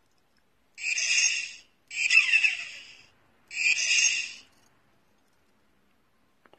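Turbo whistle sound effect played three times through the small speaker of a turbocharger-shaped keychain, each burst about a second long, the second with a falling whine.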